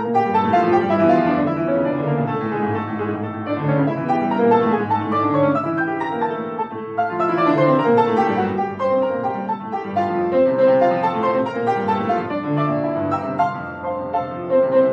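A Blüthner grand piano played solo in a fast octave étude, with octaves moving up and down the keyboard. The notes are dense and continuous.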